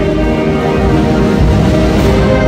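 Band music playing long held chords over a heavy low rumble.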